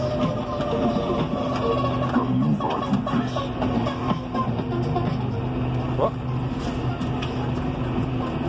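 Radio music playing inside the cab of a John Deere 6150R tractor, over the steady drone of its six-cylinder diesel engine running at cruising speed on the road.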